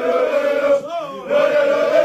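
A group of men chanting in unison, holding long notes, with a short break about halfway through where a single voice glides before the group comes back in.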